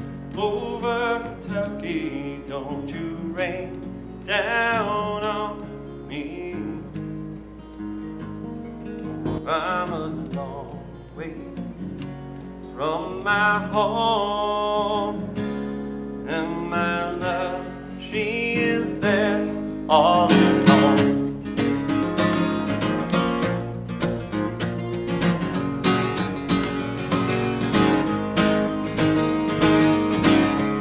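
A man singing a folk song while strumming a steel-string acoustic guitar, with sung phrases coming and going over steady chords.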